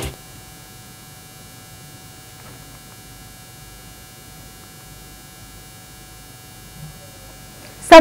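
Faint steady electrical hum with a set of thin, high, unchanging tones.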